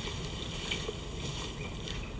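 Steady low rumbling outdoor ambience, a wind-like noise with no distinct events.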